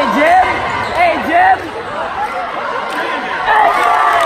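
Basketball being dribbled on a hardwood gym floor, with short sneaker squeaks and crowd voices echoing in the gym.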